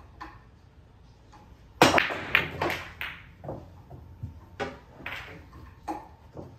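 Pool break on a 9-foot table: a loud crack as the cue ball smashes into the seven-ball rack about two seconds in, followed by a quick clatter of balls striking each other and the cushions. Several separate clicks and knocks follow as the scattered balls keep running.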